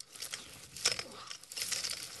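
Dry grass and brush rustling and crunching as a metal walker and feet push through it down a slope, in irregular crackles.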